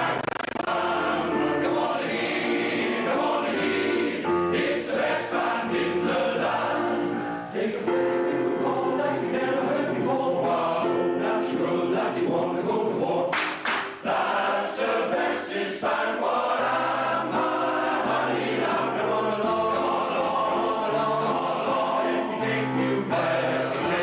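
Welsh male voice choir singing in parts, holding sustained chords, with brief breaks between phrases about seven and fourteen seconds in.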